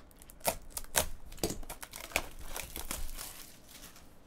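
Clear plastic packaging crinkling and crackling as a utility knife slits it open, with scattered sharp clicks and snaps.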